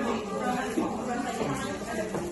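Indistinct speech: voices talking too unclearly to make out words.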